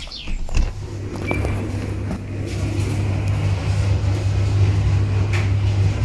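A door latch clicks, then a laundry machine's steady low hum fills the room and grows louder as the room is entered.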